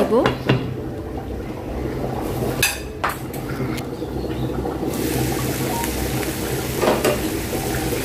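A glass lid set on a frying pan of vegetables and shrimp with a clink, then the covered food sizzling faintly. About five seconds in, the sizzle grows brighter as the lid comes off, with a knock of the lid near the end.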